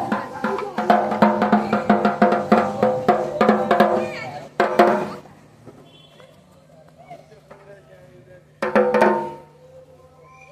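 A dhak, the Bengali barrel drum, beaten by a small child with two thin sticks for the first time: a quick run of strokes for about four seconds, two more strokes, a pause, then a short burst of strokes near the end.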